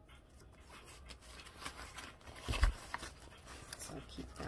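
Light rustling and small clicks of items being handled and put away in a handbag, with one dull thump about two and a half seconds in.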